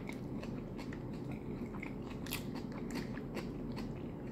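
Close-up eating sounds of a mouthful of rice and chicken stew being chewed: a run of irregular small wet clicks and smacks from the mouth, over a steady low background hum.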